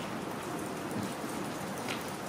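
Many press camera shutters clicking rapidly and overlapping into a dense, rain-like patter, with one sharper click near the end.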